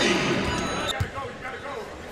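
Arena crowd noise fading after a made three-pointer, with a basketball bouncing once on the hardwood court about a second in.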